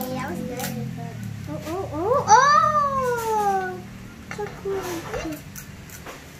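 A child's long drawn-out wordless exclamation, rising and then slowly falling in pitch, about two seconds in, followed by a few short vocal sounds, with a low steady hum underneath.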